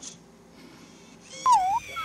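Moflin AI pet robot making a short, high chirping call about one and a half seconds in, its pitch dipping and rising again, then starting a second call that falls in pitch at the end.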